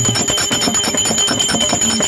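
Small hand cymbals (jalra) of a therukoothu music ensemble struck in a rapid, even rhythm, each strike ringing with a high metallic tone.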